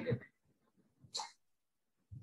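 A word trails off, then near silence on a gated video-call line, broken once by a brief faint sound about a second in.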